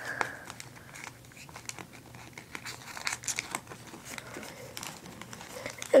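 Origami paper crinkling as fingers fold and tuck the flaps of a paper cube, a steady scatter of small crackles and ticks.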